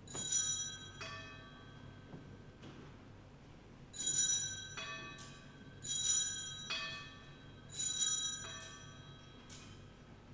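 Hand-held altar bell (Sanctus bell) rung at the altar in four short peals, each followed by a lighter second shake, the bright high tones ringing on and fading between them.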